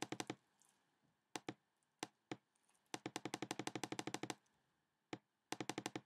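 Computer mouse clicking in quick runs of about a dozen clicks a second, with a few single clicks between the runs, as it steps a software delay-time value down one notch at a time.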